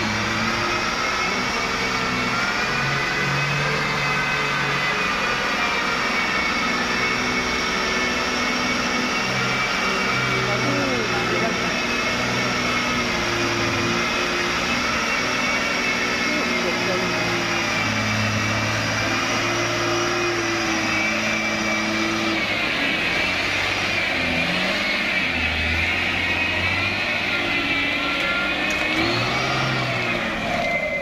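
Mitsubishi Fuso 220 PS diesel truck engine working hard at low speed under load on mud, its pitch stepping up and down with the throttle, with a steady high whine above it.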